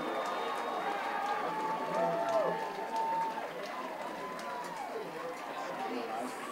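Ballpark crowd cheering and shouting, with several voices holding long yells in the middle as a base hit drops in and a run comes home.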